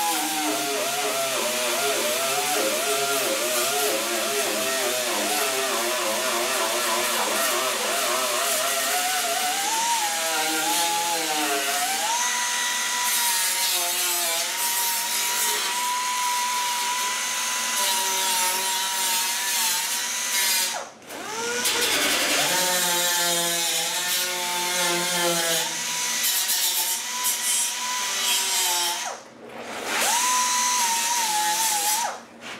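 Air-powered right-angle grinder whining as it grinds the sheet-metal cab corner of a 1963 Chevy C10, cleaning the metal ready for welding. Its pitch dips and wavers while it is pressed into the metal, then holds at a steady higher whine. Twice, about two-thirds of the way through and again near the end, it spins down and cuts out briefly before starting up again.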